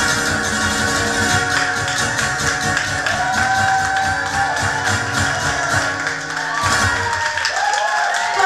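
Solo acoustic guitar played with fast, percussive strumming, which winds down to the end of the tune about seven seconds in. Voices call out near the end.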